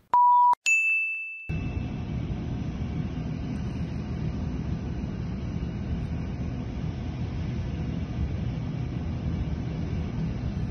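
A steady test-tone beep for about half a second over a colour-bars test card, then a bright bell-like ding that rings out for about a second. After that, steady outdoor background noise, a low rumble with hiss, picked up by a phone.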